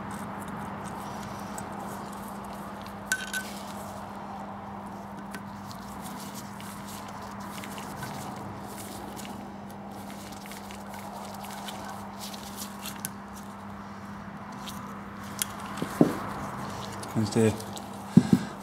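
Faint clicks and taps of a screwdriver and gloved hands working on a dismantled carburettor, a few around three seconds in and more near the end, over a steady low hum.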